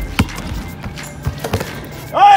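A basketball bouncing on a hardwood court as a player dribbles: one sharp bounce just after the start, then lighter thuds about a second and a half in, over background music.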